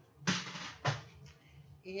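A scoring board being moved aside on a tabletop: a short scrape near the start, then a single knock just under a second in as it is set down.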